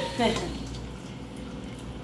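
Hot cooking water and boiled potatoes tipped from a pot into a stainless steel colander in the sink; the splashing and draining fade away.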